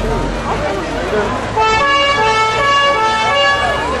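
Vintage fire engine's two-tone horn sounding, starting about one and a half seconds in and alternating between two notes a few times a second, over crowd chatter.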